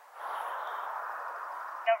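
Steady hiss of a two-way radio as a transmission opens, starting abruptly and holding, then a voice comes over the radio near the end.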